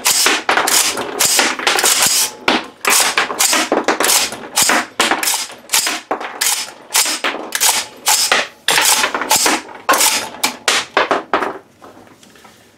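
AR-style 6.5 Grendel rifle's action worked by hand over and over: the charging handle pulled and the bolt carrier snapping home, chambering and ejecting live rounds in a rapid string of sharp metallic clacks that stops just before the end. Each round is extracted and ejected cleanly by the reworked extractor.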